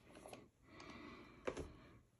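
Faint handling sounds of a rubber gas mask being turned in the hands, with a light click about a second and a half in.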